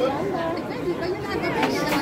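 Indistinct chatter of several people talking, no clear words, with a couple of light clicks near the end.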